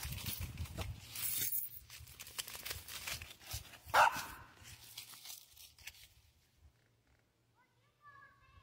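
Footsteps and thumps on wooden stairs, then a small dog gives one short, sharp bark about four seconds in.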